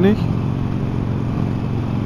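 Harley-Davidson Sportster 1200 Forty-Eight's air-cooled V-twin running steadily under way, a low even drone with no change in revs.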